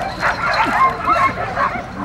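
A pack of sled dogs barking and yipping excitedly, many short rising calls overlapping, the kennel dogs worked up as a team sets off on a run.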